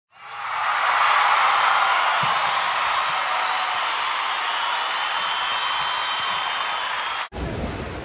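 Title-card intro sound: a steady rush of applause-like noise that fades in over the first second, holds level and cuts off suddenly about seven seconds in. A brief low rumble of wind on a phone microphone follows near the end.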